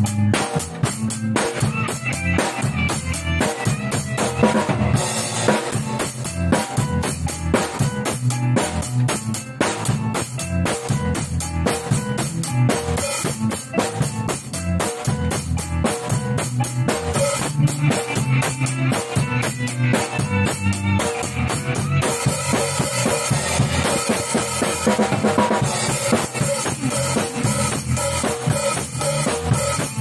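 Acoustic drum kit played in a steady groove, with bass drum, snare and cymbals, along with a backing recording of the song. The cymbal wash gets fuller about two-thirds of the way through.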